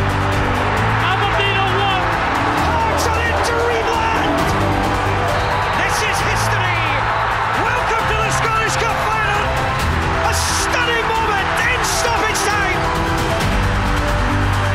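Dramatic title theme music built on long held bass notes that change every second or two, with voices mixed in over it.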